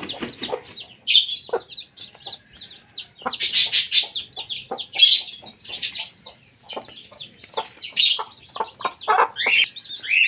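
A brood of newly hatched chicks peeping continually in quick, short high calls, with the mother hen clucking among them in lower, shorter notes.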